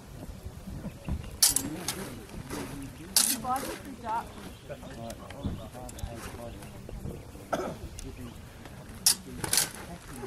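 Rapier blades striking each other in a fencing bout: a few sharp clashes, about a second in, at about three seconds, and twice in quick succession near the end, over low talk from onlookers.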